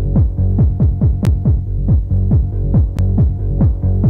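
Electronic dance music from a DJ mix, driven by a steady pounding kick drum at about three beats a second, each kick falling in pitch. Two short sharp clicks cut through, about a second in and again near the three-second mark.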